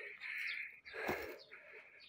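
Faint bird chirping in two stretches, with a soft knock about a second in.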